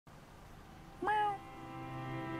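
A long-haired tabby cat meows once, a short call about a second in.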